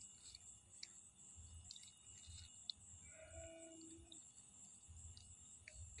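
Near silence: a faint, steady high chirring of crickets, with a few soft scattered clicks and a brief faint tone about three seconds in.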